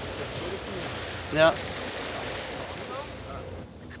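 Steady wash of wind and water around a motorboat lying on the lake, dipping slightly near the end.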